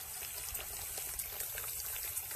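Shallow water trickling steadily through a rice paddy.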